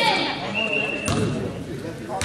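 A basketball bounced once on the hardwood gym floor about a second in, with a short, steady high tone just before it.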